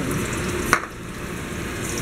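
Hot oil sizzling in a frying pan as an eggplant and ground-meat torta fries. One sharp click comes about three quarters of a second in, and the sizzle is briefly quieter just after it.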